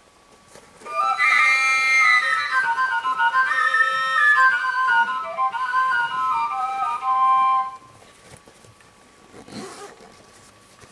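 Two tilinkó, long Hungarian overtone flutes without finger holes, played together in a short melody of stepping notes. The melody lasts about seven seconds and then stops.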